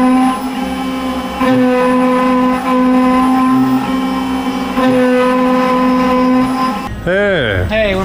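Desktop CNC mill (Othermill) cutting brass stock with an end mill: a steady whine from the spindle and axis motors, its pitch pattern shifting every second or so as the tool changes direction. Near the end it gives way to a voice with sliding pitch.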